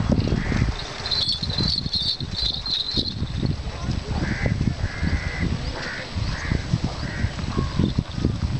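Outdoor wind buffeting the microphone in gusts, with birds calling: a run of quick high chirping notes from about one to three seconds in, then a crow cawing about five times in the second half.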